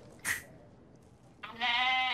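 A brief puff of spray from a metered-dose asthma inhaler, then about one and a half seconds in a loud, long sheep bleat held on one steady pitch.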